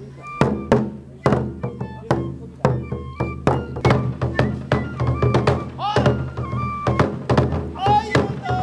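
Festival music for a kenbai sword dance: a large barrel-shaped taiko drum struck about twice a second, under short held high notes of a bamboo flute.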